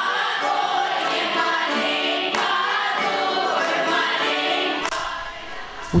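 Russian folk choir of young voices singing together; the singing fades away near the end.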